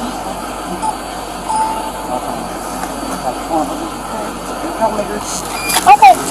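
Faint, muffled voices over the steady hum of a car's cabin, with a louder voice starting just before the end.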